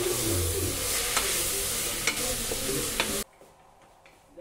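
Onion masala with mint and coriander leaves sizzling as it is sautéed in a stainless steel pressure cooker and stirred with a wooden spatula, with a few light knocks of the spatula against the pot. The sizzle cuts off suddenly about three seconds in.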